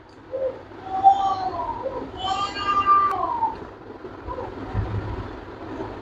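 A cat meowing off-camera: a short faint call, then a rising-and-falling meow, then a longer, louder meow a little after two seconds in that drops in pitch at its end.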